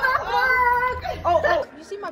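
A girl's high-pitched, drawn-out squealing voice, wavering in pitch, which cuts off abruptly about one and a half seconds in and gives way to quieter room sound.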